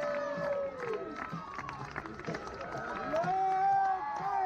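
Softball players and fans cheering a run scored, many high voices shouting over one another. A long drawn-out yell comes near the start and a louder one about three seconds in.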